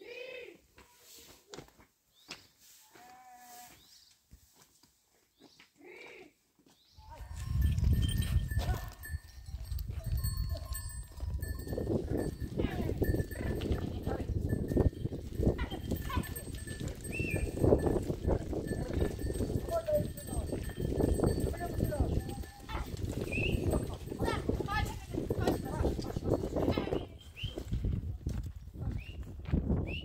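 After a few quiet seconds, a herd of goats and sheep moves over loose stones: a dense clatter and shuffle of many hooves, with bells clanking and a few short bleats.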